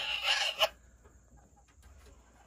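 A hen's short raspy call in the nest boxes of a chicken coop, ending with a sharp click about half a second in. After that there are only a few faint scratches.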